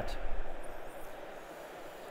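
Room tone in a pause between spoken sentences: a steady hiss through the hall's microphone and sound system, dropping a little in the first second.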